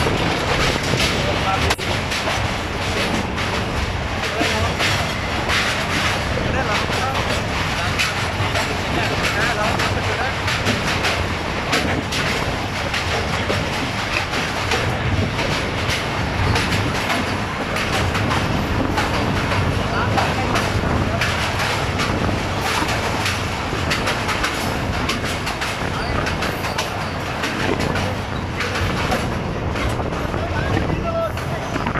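Passenger train running across a steel truss railway bridge: a steady rumble of the carriage with wheels clattering over the rail joints, heard from an open carriage door.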